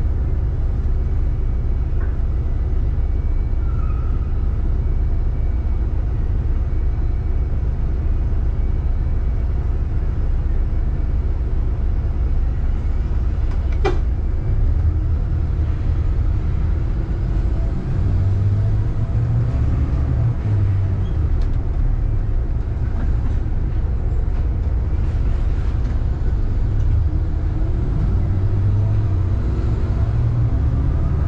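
Vehicle driving in city traffic: a steady low rumble of engine and road noise that shifts a little in pitch in the second half, with one sharp click about fourteen seconds in.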